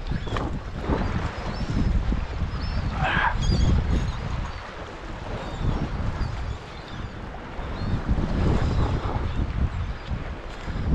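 Wind gusting on the microphone over small waves washing around the rocks at the shoreline, with a brief higher sound about three seconds in.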